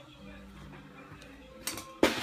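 Quiet room tone with a low steady hum, and a brief click near the end.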